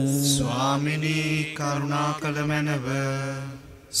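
A priest's voice chanting a Mass prayer in Sinhala on a near-steady reciting tone, with long held syllables. It fades out shortly before the end.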